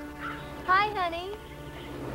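Speech: a woman calls out "Hey" once, drawn out, her pitch rising and then falling.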